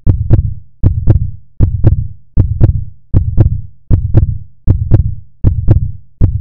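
Synthesized heartbeat-style pulse from a logo outro's sound design: a loud, deep double thump with a sharp click on each beat. It repeats about every 0.8 seconds, eight times.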